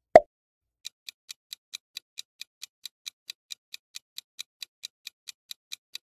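A short pop sound effect just after the start, then a quiz countdown timer's ticking sound effect: faint, evenly spaced ticks at about four to five a second, running steadily.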